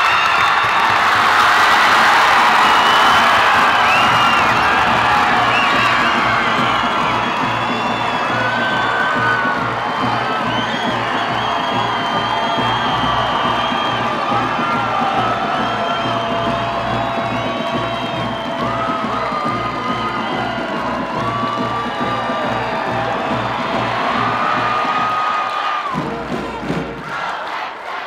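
Large basketball-arena crowd cheering and screaming as the game ends, with many high shrieks over a dense roar that stays loud for most of the time and fades near the end. A steady bass-heavy music track runs underneath.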